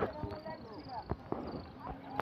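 Faint voices of people some way off, with a few short sharp knocks, two about a second in and one near the end, from fingers handling the phone.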